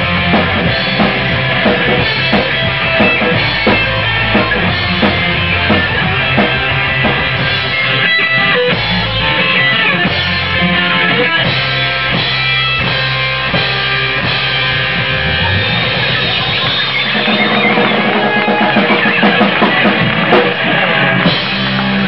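Live rock band playing loudly through amplifiers: distorted electric guitars, bass guitar and a drum kit. Late on, the deepest bass drops away while the guitars carry on.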